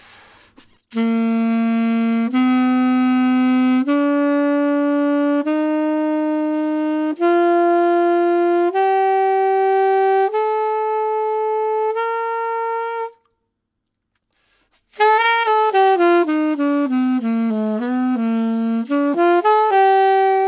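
Alto saxophone playing a slow ascending G scale, eight held notes stepping up an octave from low G with a warm, relaxed tone. After a short pause it plays a quicker run of notes around the scale that dips down and climbs back, ending on a held note.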